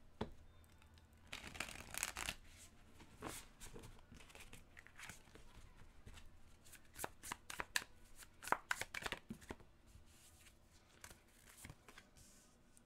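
A deck of tarot cards being shuffled by hand: faint, irregular swishes of sliding cards and small taps and flicks as the cards knock together.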